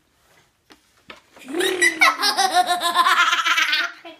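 Someone laughing, high-pitched and fast, in rapid ha-ha pulses. It starts about a second and a half in, after a near-silent moment with a few faint clicks, and runs for over two seconds, stopping just before the end.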